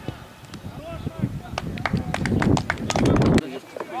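Running footsteps close to the microphone, a rapid patter of sharp knocks over a rising rumble, with faint shouts from the pitch; the sound stops abruptly about three and a half seconds in.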